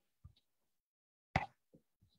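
Quiet room with a single short, sharp pop about one and a half seconds in, and two fainter dull knocks, one shortly after the start and one near the end.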